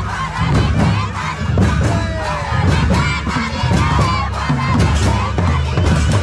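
A crowd of dancers' voices singing and calling out together over quick, steady drumbeats from a hand drum.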